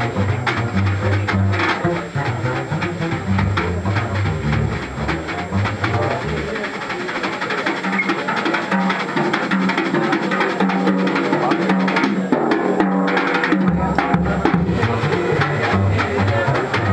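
Live swing jazz from a plucked double bass and a drum kit with cymbals. The bass's deep notes drop out for about seven seconds in the middle, leaving only higher notes, then come back near the end.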